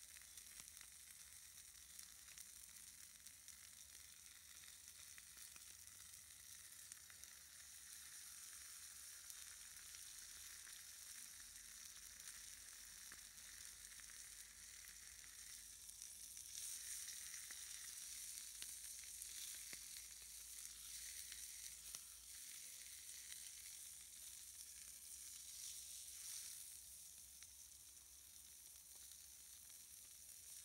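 Meat sizzling faintly in a frying pan over a small wood-fired camp stove. The sizzle is louder for several seconds past the middle, as the pieces are turned over.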